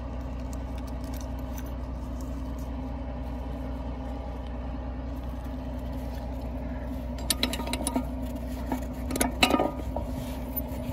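Steady low drone of a running vehicle hauling a load. A quick run of clicks and rattles comes about seven seconds in and again, louder, near the end.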